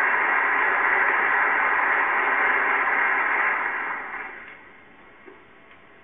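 Applause from a large assembly of standing legislators, steady and then dying away about four seconds in, leaving the faint hiss of an old film soundtrack.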